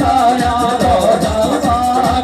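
Rajasthani Meena geet folk music: a wavering, held melody line over a quick, steady drum beat.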